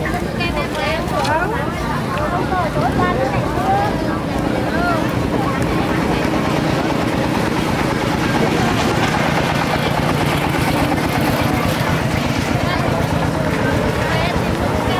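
Voices chattering at an outdoor market, with a motorbike engine running steadily close by, its low rumble filling in from about a third of the way through.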